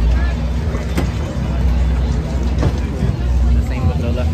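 Steady low hum of a gondola terminal's drive machinery under the chatter of a crowd of skiers, with a sharp click about a second in.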